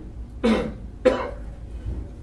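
A person coughing twice, two short, sharp coughs about half a second apart, close to the microphone.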